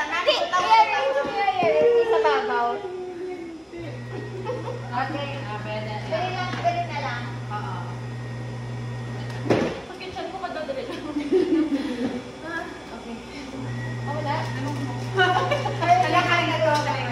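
People talking, with a steady low hum in the pauses and a single sharp knock about nine and a half seconds in.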